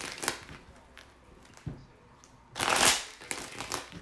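A deck of tarot cards being riffle-shuffled by hand: a few soft clicks of the cards, then, about two and a half seconds in, one loud, brief riffle as the bent halves are released and fall together, followed by a few light clicks as the deck is handled.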